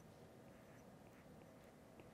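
Near silence: room tone, with a few faint, light taps and scratches of a stylus writing on a tablet screen.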